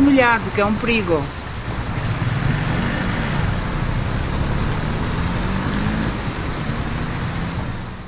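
A motor scooter's small engine running steadily as it rides along a rain-soaked street, over an even hiss of falling rain.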